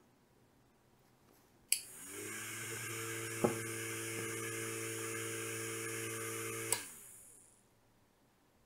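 A relay clicks shut and a small 6 V DC motor driving a plastic fan propeller spins up with a rising whine. The motor runs steadily for about five seconds, with a single light tick partway through. Then the relay clicks off and the motor winds down: the Arduino's timed on/off cycle switching the motor through a transistor and relay.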